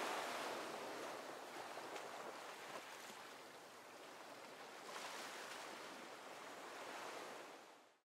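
Faint, even rushing noise like wind or surf, with no tune or voice in it, swelling slightly twice and cutting off just before the end.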